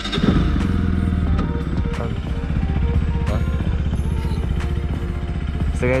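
Bajaj Pulsar NS200's single-cylinder engine starting, then idling steadily.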